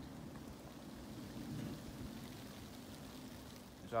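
Faint, steady outdoor background noise, an even hiss with no distinct events.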